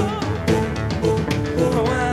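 A rock band playing live music, with drum kit and guitar.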